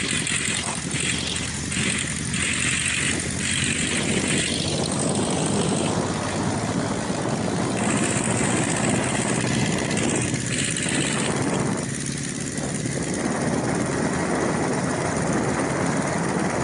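Steady wind rush on the microphone of a camera held outside a moving Volkswagen Kombi, with the van's engine running underneath. The owners say the engine is running loud and fear a cylinder-head problem or an exhaust leak.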